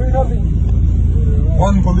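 Steady low rumble of a crowd of motorcycle engines in a street, with men shouting at the start and again near the end.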